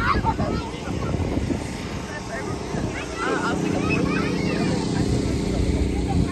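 Electric blower of an inflatable bounce house running with a steady hum that comes through clearly from about halfway on. Children's voices and chatter are heard over it.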